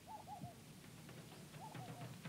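Faint bird calls: a short run of chirping notes at the start and another near the end, with light ticks in the background.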